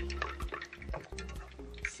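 Soft background music with light, irregular crackling from hot oil in a frying pan on the hot plate.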